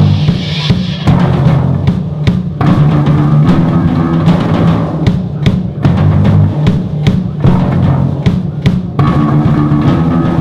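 A live rock band plays an instrumental passage: a drum kit with bass drum and snare hits over a steady bass guitar line, with no vocals.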